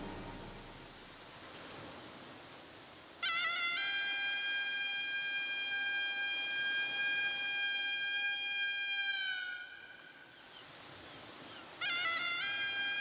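Dance accompaniment music. The opening passage fades away, then a reedy wind instrument bends up into one long, high, held note about three seconds in and holds it for about six seconds before it fades. The same note comes in again near the end.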